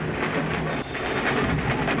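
Large procession drums beaten in a quick rhythm amid crowd noise.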